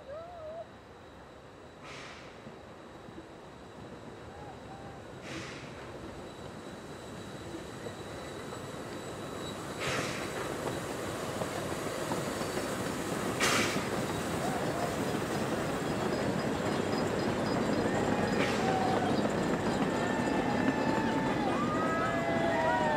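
A Puffing Billy narrow-gauge train coming downhill and rolling past, its rumble growing steadily louder, with a few short bursts of noise along the way. In the second half the wheels squeal on the curve in wavering tones.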